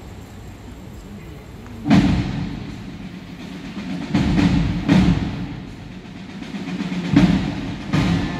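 Heavy drum strikes on timpani and large drums, four or five booming hits a second or two apart, the first about two seconds in, each ringing on in the arena's reverberation.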